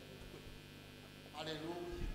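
Steady electrical mains hum from a microphone and sound system, with a short spoken word or two near the end.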